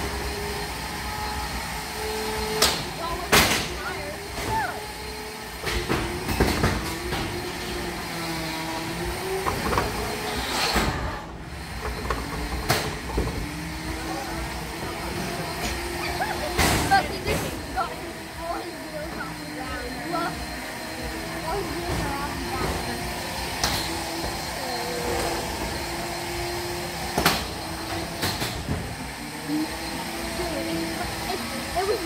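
Beetleweight combat robot's electric motors whining, their pitch rising and falling as the robot drives, with sharp knocks and clatters every few seconds as it hits the walls of the arena pit while trying to climb out.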